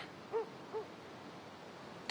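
An owl hooting faintly, two short calls less than half a second apart.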